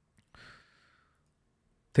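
A single short, quiet breath out near a microphone about a third of a second in; otherwise near silence.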